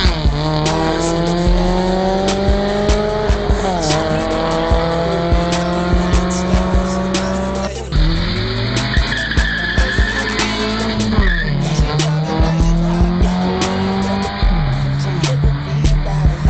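Car engine revving hard under acceleration with tyres squealing. The engine's pitch climbs over a few seconds, drops back at each gear change and climbs again.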